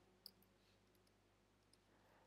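Near silence: room tone, with a single faint click about a quarter of a second in, as of a computer key or mouse button.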